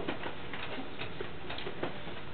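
A few faint, irregular clicks over steady room noise.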